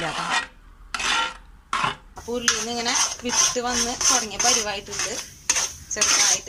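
A flat spatula scraping and stirring thick jackfruit halwa around a metal pan, each stroke a grating, squeaky scrape of the blade on the pan. A few separate strokes at first, then quick strokes, about two or three a second, from about two seconds in.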